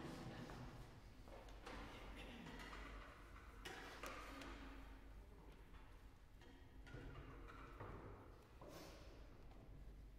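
Near silence in the pause between songs: faint, irregular shuffles and rustles in the room, with no music or speech.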